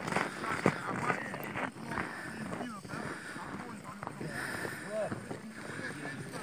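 Faint, indistinct talk from people some way off, with no close voice.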